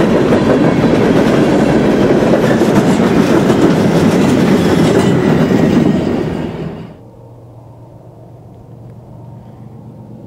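Empty coal hopper cars of a freight train rolling past close by: a loud, steady rumble of steel wheels on rail. It fades out six to seven seconds in, leaving a much quieter low rumble.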